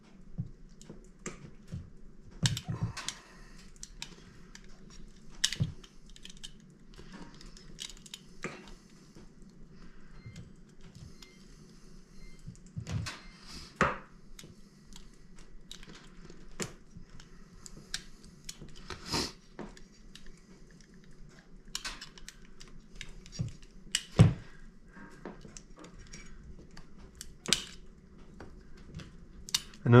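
Utility knife blade scraping and nicking at the plastic limiter caps on a chainsaw carburetor's mixture screws, cutting them down so the screws can turn farther. Irregular small clicks and scrapes, with a few sharper knocks scattered through.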